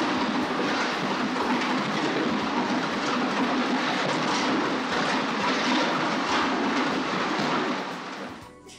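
Pan-type concrete mixer running, its rotating paddles churning wet concrete with gravel in a loud, steady rattling clatter. The sound cuts off near the end.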